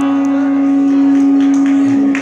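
A live rock band holds its final sustained note: a single steady pitch with a rich overtone stack.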